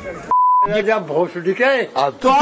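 A short, steady single-pitch electronic bleep, about a third of a second long, with all other sound cut out beneath it, like a censor bleep. A man's voice talks on after it.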